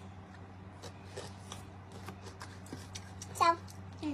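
Soccer jerseys being handled and laid out: soft fabric rustles and light taps over a steady low hum, with a brief vocal sound near the end.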